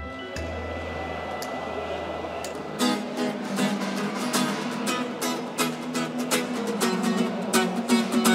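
Cutaway acoustic guitar strummed in a brisk rhythm with sharp percussive strokes, coming in about three seconds in after a quieter opening.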